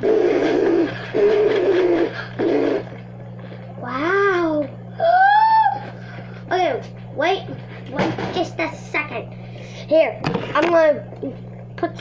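Children laughing, then making short wordless vocal calls, some rising and falling in pitch, over a steady low hum.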